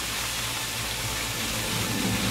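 Rushing water from a stream cascading over rocks: a steady noisy rush, with music faint underneath.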